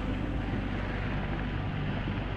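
Steady low drone of sustained tones under a wash of noise, the trailer's ambient background score.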